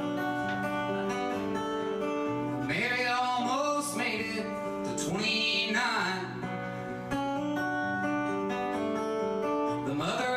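Solo acoustic guitar strummed live, with a sung voice coming in twice in short phrases, about three and five seconds in.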